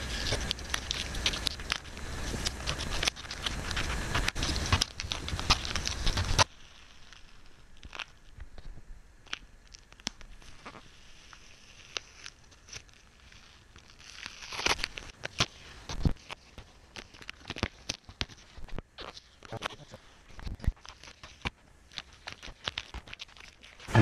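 Masking tape being peeled off a spray-painted pane, crackling and tearing with many small clicks. About six seconds in, the sound drops abruptly to fainter, scattered crackles and clicks.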